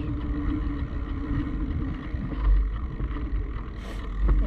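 Low wind rumble and handling noise on the microphone of a camera moving at running pace, swelling a little past halfway.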